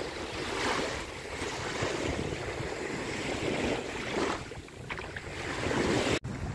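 Small waves breaking and washing up on a sandy beach, the surf swelling louder a few times as each wave comes in.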